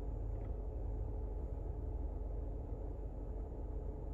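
Steady low rumble of a car's cabin, heard from inside the car, with nothing else standing out.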